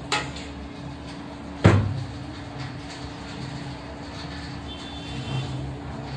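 A short knock, then about a second and a half later a louder clunk as a stainless steel pot is set down on a wooden worktable, over a steady low hum.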